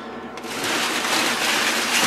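A pile of stringy 4140 steel turnings in a chip pan being rustled and stirred: a bright, scratchy metallic rustle that starts about half a second in and keeps on steadily.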